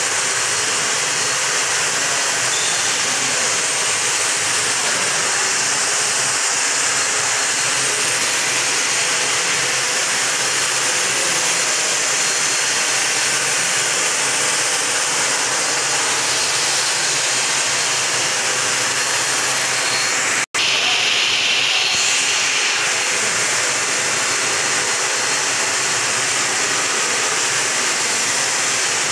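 Steady, even hiss of an aircraft's turbine engine running at an airport, with one brief break about twenty seconds in.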